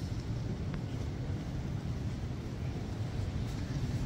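A steady, low rumble of room noise in a large hall, with no speech and no music.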